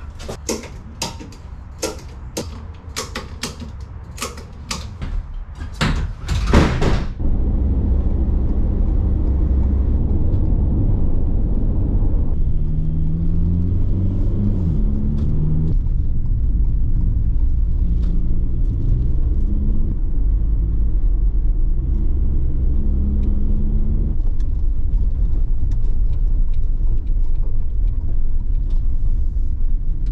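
A tie-down strap being tightened, a run of sharp clicks about two a second, for the first seven seconds or so. Then the steady low rumble of a van driving on the road, heard from inside its cabin.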